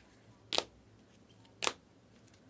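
Two sharp plastic clicks about a second apart: rigid clear plastic card holders knocking together as trading cards in them are flipped from the front to the back of a stack.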